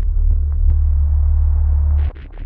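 A loud, deep, steady rumble with faint scattered crackles over it: the low drone that opens the track.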